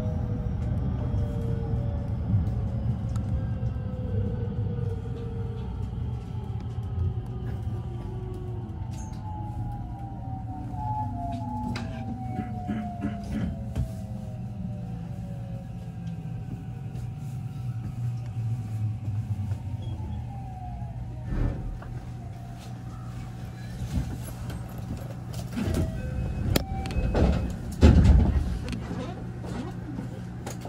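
Electric train slowing to a stop: the motors whine in several falling tones over a steady low rumble as it brakes. Then it stands with a steady hum, a few clicks and a loud thump near the end.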